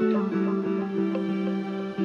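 Instrumental passage of a song: guitar notes picked in a steady rhythm over sustained held chords, which shift a few times.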